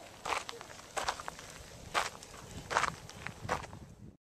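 Footsteps crunching on a gravel and dirt mountain trail while walking downhill, about five steps at an uneven pace.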